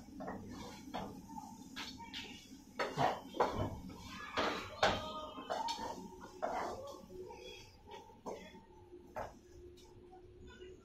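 Wooden spatula scraping and knocking against a non-stick frying pan while eggs and onions are stirred, in irregular strokes that are loudest a few seconds in.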